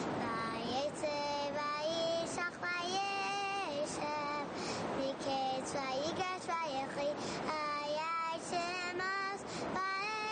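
A child's high voice singing a melody with long held, wavering notes, over a light musical accompaniment.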